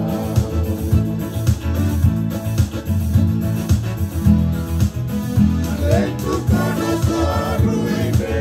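A Fijian song played on a strummed acoustic guitar and an electronic keyboard with a steady beat and bass. Men are singing; the lead voice pauses midway and comes back in near the end.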